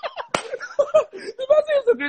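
Men laughing and talking, with one sharp slap about a third of a second in.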